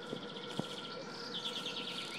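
Small songbirds singing: fast trills of high notes, with a second trill that falls in pitch about one and a half seconds in.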